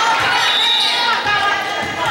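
Many voices of players and spectators talking and calling out in an echoing gymnasium, over a run of dull thuds about every half second, like a ball being bounced on the hardwood floor.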